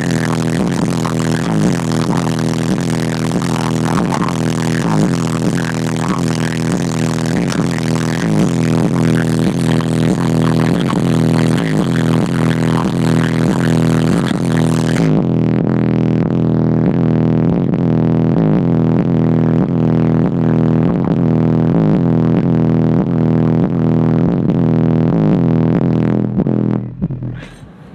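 Music played very loud through a car audio system of four D.A.D. subwoofers driven by Sundown SAZ-1500 amplifiers, with a heavy, dominant bass line. About halfway through the sound turns muffled, the highs suddenly gone, as the phone's microphone is covered.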